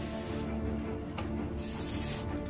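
Aerosol spray paint can spraying in two short bursts, one trailing off about half a second in and another starting near the end, with a single click between them.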